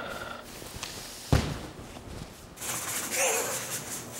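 A large ink-loaded calligraphy brush is struck down onto paper on the floor with one sharp thud about a second in. In the last part it is dragged across the paper in a rough, hissing scrape.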